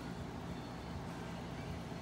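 Steady low hum with a hiss of background noise, no distinct events.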